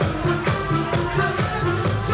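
Electronic dance music played loud through a nightclub sound system, with a steady beat about two strikes a second under synth lines.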